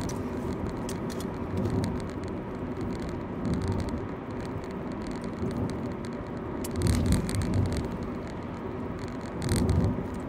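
Car cabin road noise while driving: a steady hum of engine and tyres, with a few light clicks and rattles.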